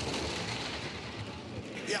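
Two-man bobsleigh sliding fast down the ice track: a steady rushing hiss of its steel runners on the ice, easing off slightly toward the end.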